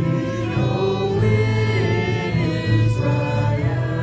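A small worship band playing a song: several voices singing together over acoustic guitar and violin, with a wavering held note in the middle.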